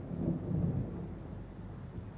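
A low rumble that swells about half a second in and then fades away.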